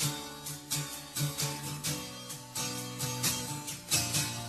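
Music: an instrumental stretch of a song, led by guitar notes in a steady rhythm, with no singing.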